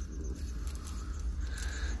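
Faint rustling of hands rolling a joint in rolling paper, over a low steady hum.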